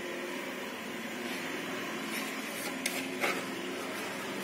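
A spoon and spatula scraping whipped coffee foam out of a plastic bowl into a glass, with two light clinks about three seconds in, over a steady background hum.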